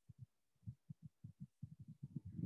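Near silence on a video call's audio, broken only by faint, short, low thumps at irregular spacing, coming closer together towards the end.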